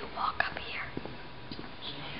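A person whispering, with a sharp click about half a second in.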